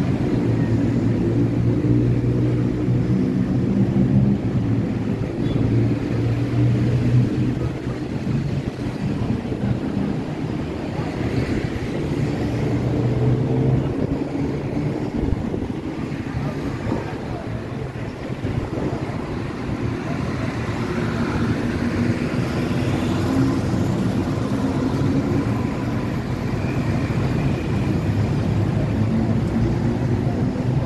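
City street traffic at night: motor vehicles running close by with a steady low engine hum, strongest in the first half, over general traffic noise and passers-by's voices.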